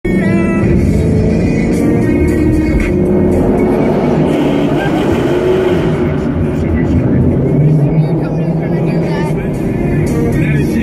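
Mopar V8 muscle cars running at wide-open throttle in a tunnel, heard from inside the cabin of one of them. Loud engine and exhaust noise, strongest in the low range.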